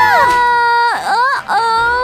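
A young woman screaming: one long, high, steady shriek that drops away about a second in, then two shorter rising wails.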